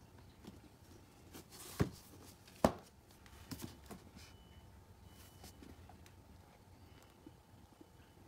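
A cardboard product box being handled: two sharp knocks a little under a second apart, the second the louder, with light rustling of the box around them and again shortly after.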